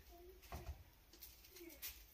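Near silence with a few light clinks and knocks of aluminium cooking pots and lids being handled, about half a second in and again near the end, and some faint short low calls.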